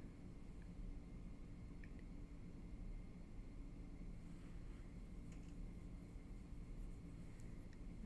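Quiet room tone: a faint steady hum with a few faint ticks.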